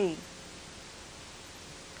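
Steady background hiss of an old VHS tape soundtrack in a pause between words, with the tail of a woman's voice fading out at the very start.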